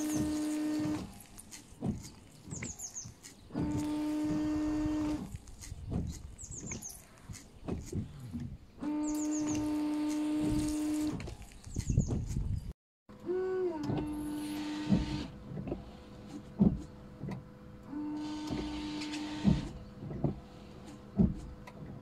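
Land Rover Freelander's electric windscreen washer pump running in repeated bursts of about two seconds, each starting a little higher in pitch and settling into a steady whine. Clicks come between the bursts, and a hiss of spray comes with the later ones.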